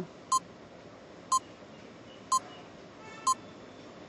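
Countdown timer sound effect beeping once a second: four short, identical beeps.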